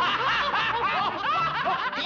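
Cartoon pigs laughing together in high-pitched voices, several chuckling laughs overlapping.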